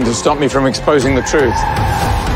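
Film soundtrack: a man's voice crying out in short strained bursts during a struggle. About one and a half seconds in it gives way to the noisy rush of a car with a thin steady tire squeal.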